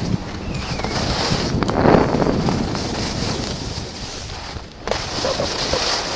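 Wind rushing over a ski-mounted or helmet camera's microphone as the skier descends, mixed with the hiss of skis sliding on snow. It dips briefly near the end, then picks up again.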